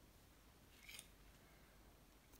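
Near silence, with one faint, short sound about a second in.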